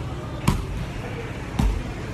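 Basketball bouncing on a hardwood gym floor as it is dribbled, two bounces a little over a second apart.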